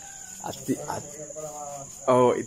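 Insects in the surrounding vegetation keep up a continuous, steady high-pitched drone, under soft voices.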